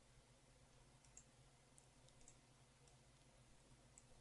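Near silence with a few faint computer mouse clicks, spread over the second and third seconds.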